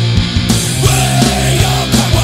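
Oi! punk rock recording: a loud band of electric guitar, bass and drums playing with a steady beat.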